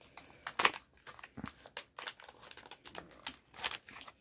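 Brown foil-lined MRE wrapper crinkling as the protein bar is pulled out of it, in a string of irregular crackles.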